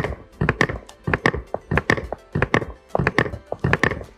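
Electronic galloping hoof-beat sound effect from the Battat unicorn rocking horse's built-in sound unit: a run of quick clip-clop knocks in a galloping rhythm, about three to four a second, over background music.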